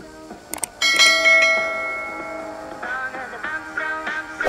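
Subscribe-button sound effect over intro music: a few quick mouse clicks, then a bell chime just under a second in that rings and slowly fades over a second or two.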